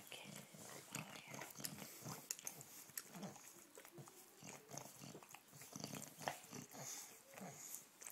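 A bulldog licking bare skin: faint, wet licking in quick, irregular strokes.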